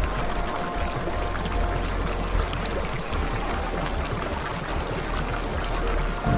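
Shallow water running steadily along a small stony channel, trickling and splashing over the stones.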